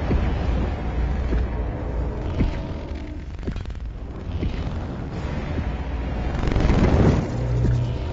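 Action-film soundtrack: music over a deep, heavy low rumble, with a few sharp hits in the middle and a loud swell building about six to seven seconds in.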